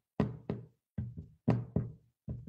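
A quick, irregular series of dull knocks, about six in two seconds, each dying away briefly.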